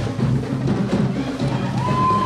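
Marching band playing, with drums to the fore.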